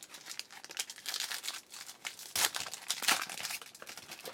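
Foil wrapper of a Topps Platinum football card pack being torn open and crinkled by hand, in irregular crackling bursts that grow louder about a second in.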